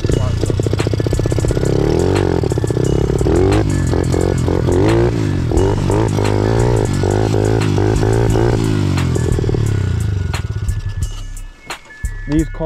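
Honda CRF50 pit bike's small four-stroke single-cylinder engine running while riding, its pitch rising and falling again and again with the throttle. Near the end the engine eases off and the sound drops away.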